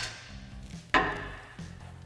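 A single sharp metallic clank about a second in, ringing briefly as it fades, as a small metal part or tool is set down during wheel removal, over quiet background music.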